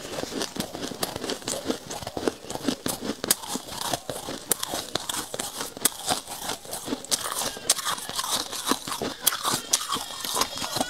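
Close-miked chewing and crunching of powdery freezer frost: a dense, irregular run of crisp crackles, with a metal spoon scooping through the frost in a steel bowl.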